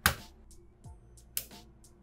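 Mains plug pushed into a power-strip socket: a sharp click as it goes in, then a second, lighter click about a second and a half later.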